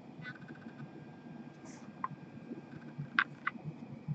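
Quiet room hum with a few light clicks and taps from gloved hands handling cards at a desk, the two sharpest a quarter second apart about three seconds in.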